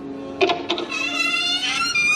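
Recorded show music from the stage's sound system: a few short clicks about half a second in, then a held chord.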